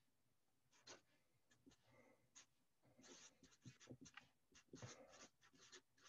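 Faint felt-tip marker scratching on paper in a quick run of short strokes as a line of letters is written.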